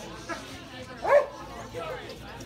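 A dog gives one short, high yip about a second in, over background chatter.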